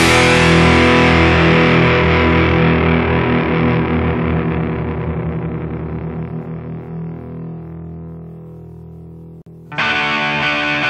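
The closing distorted electric guitar chord of a punk rock song, left to ring and slowly fading away over about nine seconds. Just before the end the next song starts suddenly at full volume.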